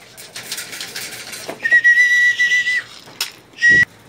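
A steady whistle, blown to call a homing pigeon in to its loft: one note held for about a second, then a short second note near the end, with a low bump under it.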